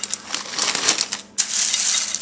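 Dry farfalle (bow-tie pasta) spread by hand over raw spinach leaves in a baking dish: a dense clatter of hard pasta pieces knocking together and against the leaves, with a brief pause a little past halfway.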